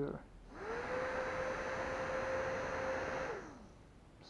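Small DC motor of a converted barbecue blower fan, running on a 3.7 V lithium cell. It spins up about half a second in with a rising whine, which is the slow turn-on its transistor soft-start circuit is built for. It then runs steadily with a rush of air and winds down with a falling whine near the end.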